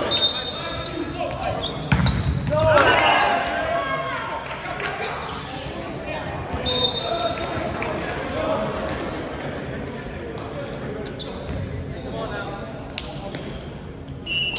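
Indoor volleyball rally in an echoing gymnasium: sharp knocks of the ball being struck, players shouting, loudest about two to three seconds in, and brief high squeaks about a second in and again around the middle. Voices and court noise go on after the point ends.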